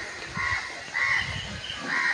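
A bird calling repeatedly outdoors: about three short calls, a little over half a second apart.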